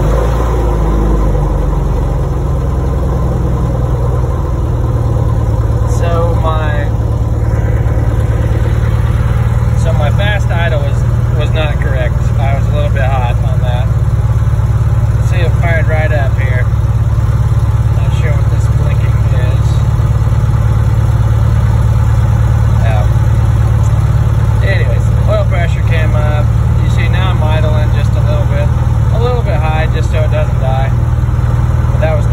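Lycoming IO-360 four-cylinder fuel-injected aircraft engine and propeller, having just caught on a hot start, running steadily at a fast idle of about 1100 RPM.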